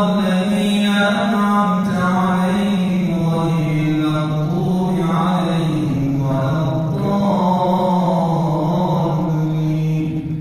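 A man's solo, unaccompanied religious chanting through a microphone, in long held melodic phrases whose pitch slides between notes.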